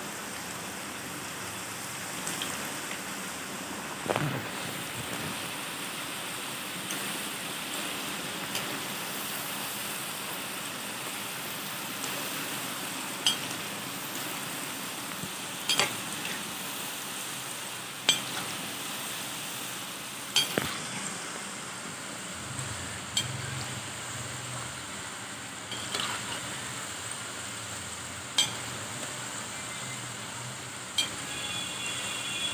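Maida namkeen pieces deep-frying in hot oil in a steel kadhai: a steady sizzle, with a few sharp clicks scattered through it.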